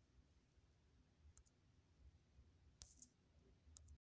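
Near silence, broken by a few faint, brief clicks from the phone being handled, the clearest about three seconds in.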